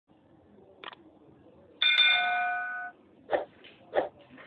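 Sound effects of a YouTube subscribe animation: a mouse click, then a bell chime that rings for about a second, then two more sharp clicks near the end.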